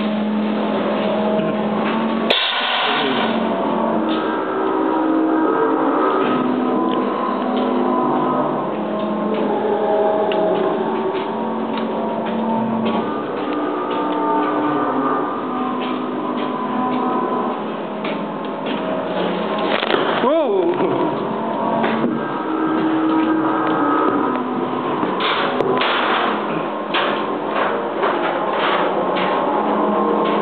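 A haunted-house attraction's eerie background soundtrack: sustained low tones that shift in pitch. Scattered clicks and knocks run through it, with a sharp hit about two seconds in and a swooping sound effect about twenty seconds in.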